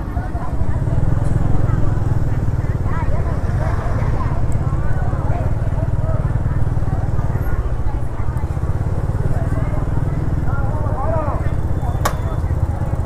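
Motor scooter engines running close by as scooters push slowly through a crowded street market, a steady low rumble under the mixed chatter of vendors and shoppers.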